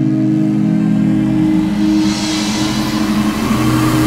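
Intro of a heavy rock song: a held, distorted electric guitar chord sustains, and a wash of noise swells up over it from about halfway through.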